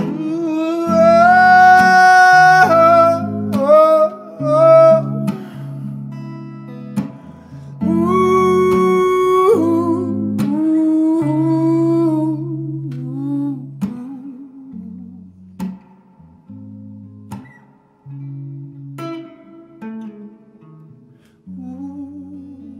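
A man's wordless singing over electric guitar in a slow song. The voice holds two long high notes, one near the start and one about eight seconds in. After that the music turns softer and the guitar carries on mostly alone.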